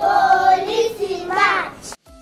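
Young children singing together in two held phrases, cutting off suddenly near the end.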